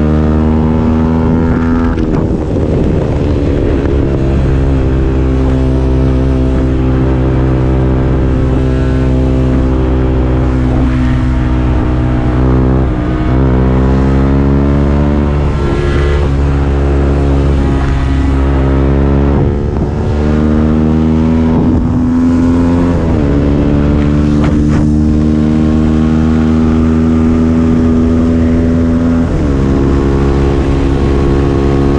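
Benelli RNX 125 motorcycle running on the road through a replica Akrapovic exhaust. The engine note holds steady for stretches and falls and rises in pitch several times as the throttle and gears change, with wind noise underneath.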